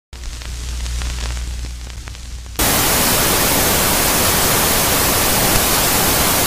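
Television static. A low hum with faint crackles, then about two and a half seconds in, loud steady static hiss cuts in and holds.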